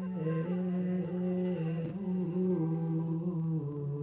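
A man's voice chanting a slow, drawn-out melody without clear words, holding long notes and stepping between a few pitches.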